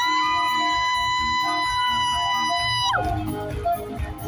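Live band music with one long, steady high note held over the accompaniment, which slides down and breaks off about three seconds in.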